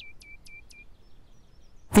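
A songbird singing a quick trill of chirps, about five a second, each note sliding sharply down and then holding briefly; the run stops a little under a second in.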